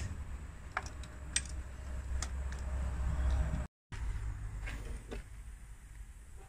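A few scattered sharp knocks and clicks of tools on a BMW diesel engine as its carbon-fouled injectors are worked out, over a low rumble of handling noise.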